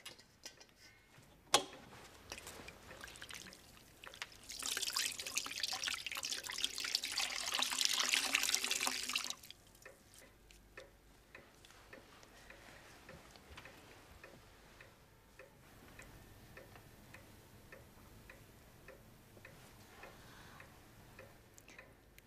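A sharp knock about a second and a half in, then water splashing and trickling in a china washing bowl for about five seconds as a cloth is wetted and wrung out. After that, faint regular ticking of a clock.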